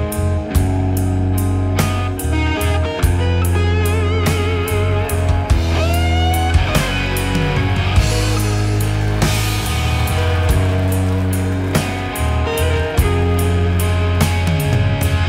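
A live Southern rock band playing an instrumental passage: a lead electric guitar line with wide vibrato and a bent note about six seconds in, over bass guitar and a drum kit.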